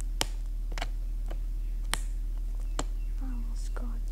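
Steady low hum with about five sharp clicks spread through it, the loudest one just after the start. A faint, murmured voice comes in near the end.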